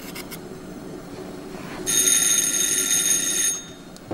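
An electric doorbell rings once, a steady ring of about a second and a half starting about two seconds in.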